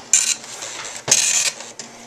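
IBM 5152 Graphics Printer, a dot-matrix printer, printing: its print head buzzes across the paper in separate passes, a short one at the start and a longer one of about half a second about a second in.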